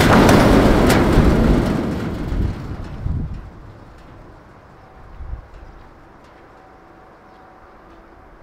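A loud rumbling crash that dies away over about three seconds, followed by faint background noise with a few small clicks.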